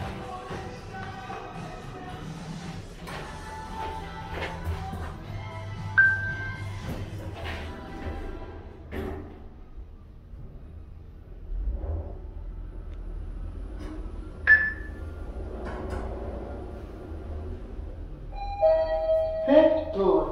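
Background music over a low steady hum, with two single chime dings about eight seconds apart, typical of elevator arrival chimes.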